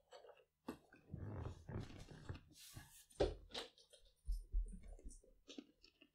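Rustling, a few sharp clicks and some low thumps, irregular and fairly quiet: handling and movement noises close to the microphone as a person shifts and settles back in a leather armchair.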